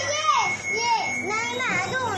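Young children's high-pitched voices, excited chatter and calls, with a thin steady high electronic tone underneath that cuts off about three quarters of the way through.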